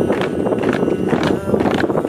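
Boots of a squad marching in step on pavement, a steady run of stamping footfalls.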